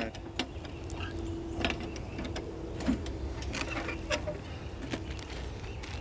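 A metal ammo can being unlatched and opened by hand: a few scattered clicks and knocks from the latch and lid as it is handled. A faint steady hum sits underneath most of it.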